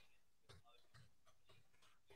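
Near silence, with a few faint ticks about half a second apart.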